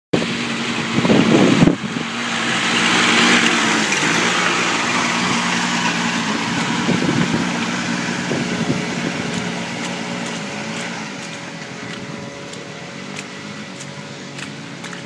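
Kubota B6200 compact tractor's three-cylinder diesel engine running as the tractor drives away along a muddy track, its engine speed rising and falling a little. A loud rough burst comes in the first two seconds, and the sound slowly fades as the tractor pulls away.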